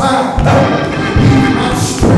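Live church music with a driving beat: heavy drum hits throughout and bright cymbal crashes at the start and again near the end.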